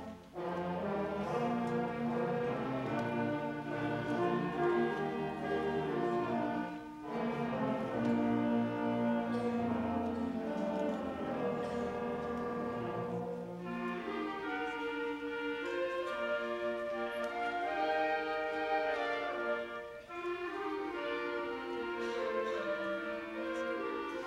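School concert band playing, with the brass to the fore. The phrases break off briefly every six or seven seconds, and a little past halfway the low parts drop out, leaving the higher winds.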